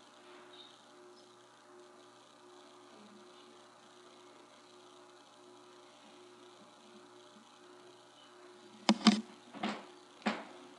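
Near silence apart from a faint steady buzzing hum, with two brief sharp sounds near the end.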